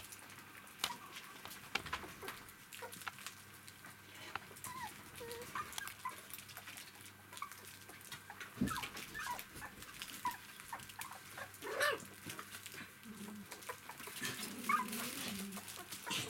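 Three-week-old poodle puppies giving short, high squeaks and whines now and then as they play, with small knocks and scuffles of paws and toys on the floor.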